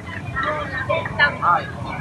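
People's voices yelling in short rising-and-falling cries, loudest in the second half, over a low steady hum.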